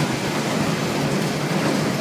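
Tire-crushing recycling machinery running, a steady dense noise, with shredded rubber chips pouring off the discharge onto a pile.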